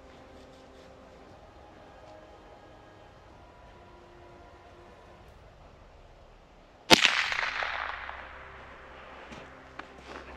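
A single shot from a Derya TM22 semi-automatic .22 LR rifle about seven seconds in: one sharp crack that echoes and fades away over a second or so. Before it, only faint, steady outdoor background.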